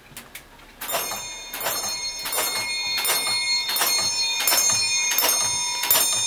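Brass alarm bell of a Gamewell fire alarm telegraph board striking a run of evenly spaced strokes, about one every 0.7 s, each stroke left ringing. The bell is tapping out a box alarm signal sent over the circuit by the transmitter.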